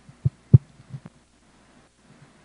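A few short, low thumps in quick succession, the loudest about half a second in, then a faint steady hum.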